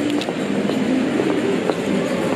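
Steady din of a busy shopping mall: a dense wash of crowd noise and bustle, with occasional light clicks, picked up by a handheld camera as it is carried along.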